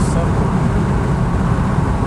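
Steady low rumble of road and tyre noise inside a moving car's cabin.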